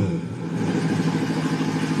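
Steady mechanical hum of an engine running, a low drone with an even hiss above it.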